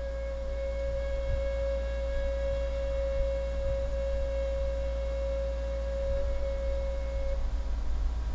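A single steady held tone with overtones, running unchanged and stopping shortly before the end, over a constant low electrical hum.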